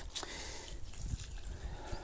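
Water from a watering can trickling faintly into the soil of a potted citrus tree, over a low rumble.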